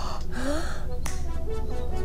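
TV episode soundtrack: background music with held tones, a short rising glide, and a single sharp click about a second in.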